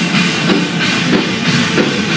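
Heavy metal band playing loudly on stage, with the drum kit to the fore in a dense, unbroken wall of sound.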